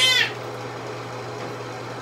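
A cat meowing once at the very start, one wavering high-pitched call. After it only a low steady hum remains.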